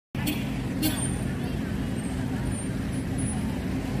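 A steady low mechanical hum, with two brief sharper sounds in the first second and faint voices in the background.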